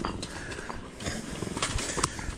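A man breathing hard under load as he walks downhill carrying two 3-inch concrete pump hoses on his shoulders, picked up close by a chest-strapped microphone. A few short scuffs of footsteps on dirt come through.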